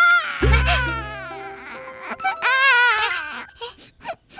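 Cartoon baby crying in two long, wavering wails, the second starting a little past halfway, over background music with a deep bass note.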